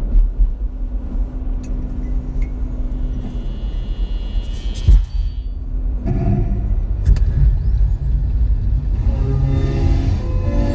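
Low, steady road and engine rumble inside a moving car on a highway, with music coming in about six seconds in.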